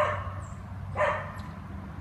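Dogs barking, two barks about a second apart, set off by black bears in the yard.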